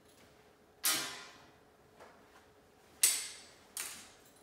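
Three sharp metallic clinks, each with a short ring, as a gait belt with a metal buckle is put around a seated person's waist. The first comes about a second in, and the other two near the end, close together.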